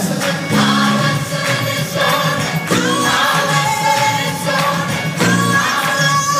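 Gospel choir singing in full voice over a live band.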